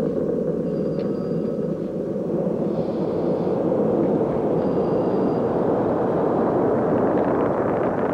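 Space Shuttle Atlantis climbing after liftoff, its solid rocket boosters and main engines firing: a dense, continuous rumble that grows fuller and brighter after about two and a half seconds.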